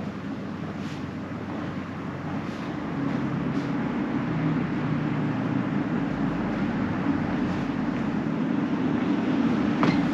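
Steady low rumble of road traffic, growing louder about three seconds in, heard from indoors. Footsteps on wooden floorboards come in near the end.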